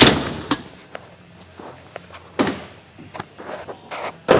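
A Ford Explorer's side door shut with a sharp slam, followed by a second knock about half a second later and a few lighter clunks and knocks.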